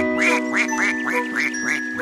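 A rapid run of cartoon duck quacks, about four a second, over a held musical chord.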